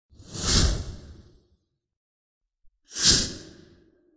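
Two whoosh sound effects about two and a half seconds apart, each swelling quickly and fading away over about a second.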